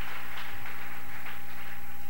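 Steady background hiss with a low electrical hum and a thin steady tone underneath; no distinct sound event.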